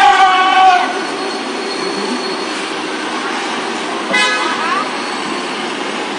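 Street traffic with buses and cars running, under a steady wash of engine and tyre noise, and a short vehicle horn toot about four seconds in.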